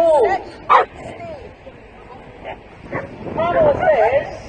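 Parson Russell terrier yapping at the start line, short high yelps bending down in pitch, with a sharp bark about a second in and a quick run of yelps near the end.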